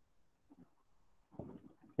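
Faint strokes of a marker drawn across a whiteboard, two brief sounds, one about half a second in and a slightly louder one near the end.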